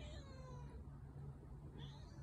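Domestic cat meowing twice: a meow at the start that falls slightly in pitch and lasts under a second, then a shorter one near the end. The calls are faint.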